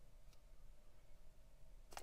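Near silence: room tone, with at most a faint tick early on.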